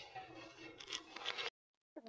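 Faint scraping and light clinks of a steel ladle against the bottom of a stainless steel kadhai as milk is stirred while it heats, so that it does not stick. The sound cuts off to dead silence about a second and a half in.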